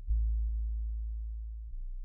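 Deep 808-style bass notes of a hip-hop beat ringing out and slowly fading, with no drums or melody: one note struck just after the start and a second, quieter note about three-quarters of the way through.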